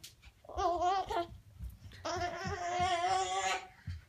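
A toddler girl singing a wordless, wavering chant in two phrases, the second longer and held near one pitch, with a few soft low thumps from her dancing feet.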